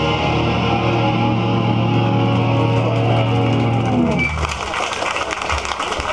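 Live hardcore band's distorted electric guitars and bass holding a sustained ringing chord, which cuts off about four seconds in, leaving a quieter, noisier stretch of amplifier noise and scattered clicks before the playing resumes.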